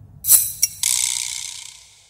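A short rattle with a click, then a sudden high hiss that fades away over about a second.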